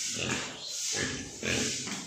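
Landrace pigs grunting: three short, rough grunts about half a second apart.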